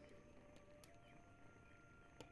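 Near silence, with only a very faint held tone underneath that steps up slightly in pitch about halfway through.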